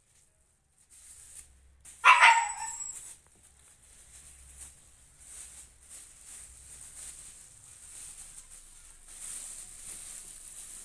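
Thin plastic bag crinkling and rustling as it is handled, in small irregular crackles. About two seconds in, one loud, short pitched cry or bark cuts through.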